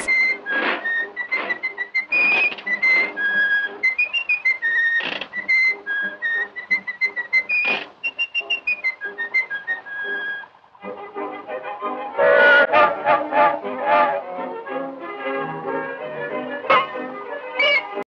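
A whistled tune of short, hopping high notes over a rhythmic music backing, breaking off about ten seconds in; a fuller passage of music with lower, richer notes follows.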